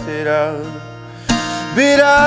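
Acoustic guitar with a man singing: a sung note trails off in the first half, the music drops quieter for a moment, and the voice comes back in strongly near the end.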